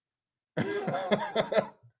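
A man laughing, starting about half a second in and trailing off just before the end.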